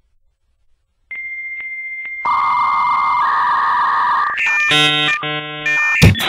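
Synthesizer intro of electronic tones: after about a second of silence, a steady high beep-like tone sounds with faint regular clicks. A lower tone joins about two seconds in and the high tone steps down. Near the end, stacked chord tones pulse on and off, and a drumbeat begins right at the close.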